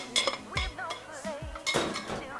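A metal spoon scraping and knocking against a stainless steel saucepan as cooked radicchio is spooned out into a ceramic bowl: several short clinks and scrapes, spread through the moment.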